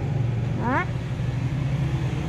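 Shibaura D28F tractor's four-cylinder diesel engine idling steadily, a low even rumble.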